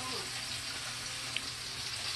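Steaks sizzling steadily in butter with garlic in a frying pan, a continuous hiss, with one short high tick about a second and a half in.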